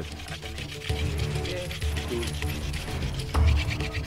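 Background music with held notes and a bass line. Under it, a fast, fine scraping rattle from a wooden hand-drill spindle spun between the palms against a wooden hearth board to make fire by friction.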